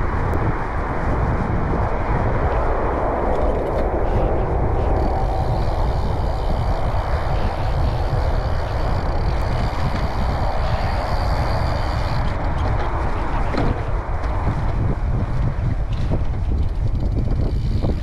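Steady wind rush over the camera microphone, mixed with the tyres of a gravel bike rolling over a dirt trail at about 20 km/h, with a few light clicks from bumps.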